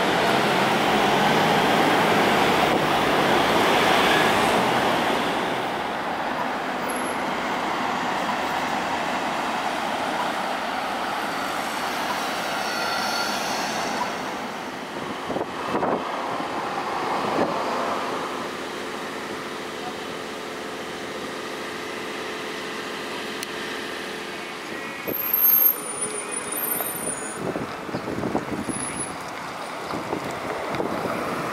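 Road traffic: cars and pickup trucks driving past on a town road, with tyre and engine noise loudest in the first few seconds. A steady engine hum follows in the second half, then brief high-pitched sounds near the end.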